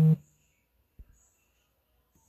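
A woman's drawn-out "oh" ending just after the start, then near silence with a single faint click about a second in.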